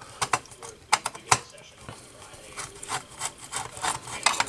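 Sharp clicks and light knocks of a screwdriver and small metal parts being handled as a screw is taken out of an old radio's chassis. About four distinct clicks come in the first two seconds, followed by softer rattles.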